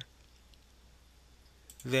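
Faint low hum and hiss, with a few faint clicks from a computer mouse near the end, as a man begins speaking.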